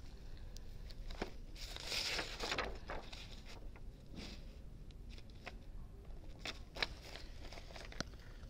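Faint rustling and crinkling of a canvas bag and the clear plastic carrier sheet of a heat-transfer vinyl design being handled and positioned by hand, with a short louder rustle about two seconds in and a few light clicks and taps.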